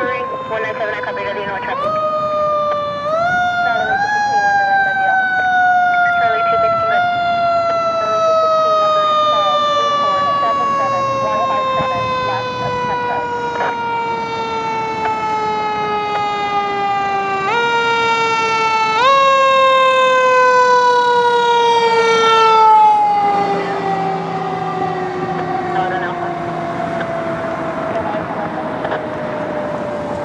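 Fire engine siren wailing in a long, slowly falling tone that is revved back up in short steps several times. About three quarters of the way in, the pitch drops as the truck passes, and its engine rumble comes through as it drives away.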